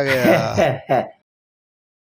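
A man's voice speaking and ending on a drawn-out 'aah', then cutting off abruptly to dead silence a little over a second in.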